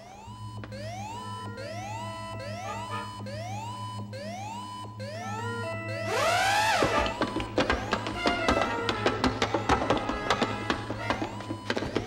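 Electronic alarm sound effect: a rising whoop repeating about every 0.7 seconds over a steady low hum, signalling an emergency. About six seconds in a whooshing swell breaks in, followed by a rapid run of clicks and short electronic tones.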